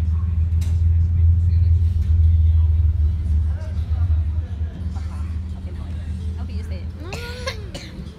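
Indoor soccer game ambience: a loud low rumble over a steady hum, fading after about four seconds. Players' voices and a few sharp knocks sound through it, with one drawn-out call rising and falling near the end.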